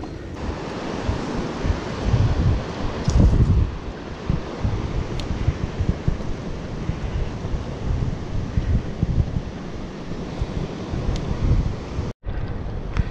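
Wind buffeting the microphone of a handlebar-mounted GoPro on a moving bicycle, in uneven gusts with a few small clicks from the ride.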